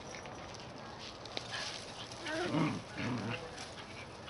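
A large dog and two puppies play-fighting, with two short bursts of dog vocalizing in the second half.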